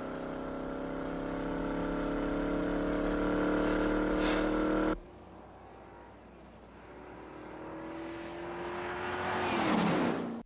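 Dodge muscle car's V8 engine pulling hard under steady acceleration, its note slowly climbing in pitch and level. About five seconds in, the sound cuts abruptly to the same engine heard from outside: it starts quieter, grows louder as the car approaches, and drops in pitch as the car passes near the end.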